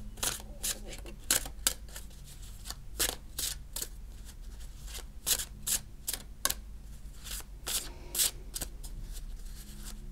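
A tarot deck being shuffled by hand, overhand: irregular soft clicks and swishes of cards sliding and striking one another, about two or three a second.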